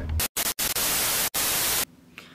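A burst of white-noise static, an even hiss over the whole range, broken by two brief dropouts and cut off suddenly near the end.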